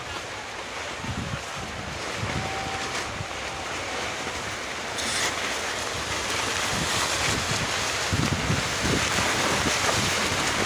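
Steady rushing noise of wind on the microphone mixed with the hubbub of a large crowd, growing a little louder about halfway through.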